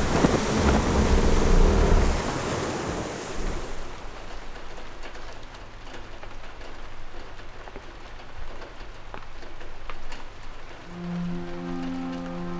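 Thunderstorm sound effects: heavy rain with a deep thunder rumble, loud at first and fading away over the first four seconds. After that it is quieter, and near the end music comes in with held low notes.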